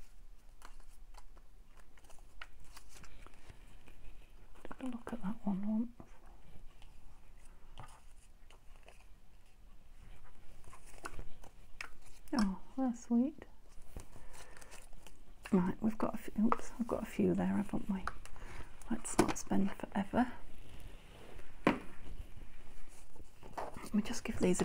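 Paper cut-outs rustling and clicking as they are picked through by hand in a metal tin and a box, in a series of small, irregular handling noises. A woman's voice murmurs briefly a few times.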